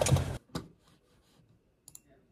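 Car cabin sound with the engine running stops abruptly less than half a second in, leaving near silence broken by a soft click and a pair of sharp clicks near the end.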